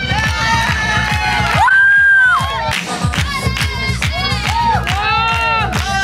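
Music with a steady beat played over stage speakers, with a crowd cheering and shouting over it; a long held shout about two seconds in is the loudest moment.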